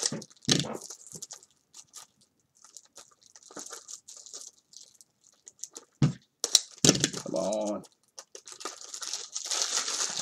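Plastic wrapping crinkling and tearing as card boxes and supplies are handled, with a few sharp knocks and clicks, the loudest about six to seven seconds in.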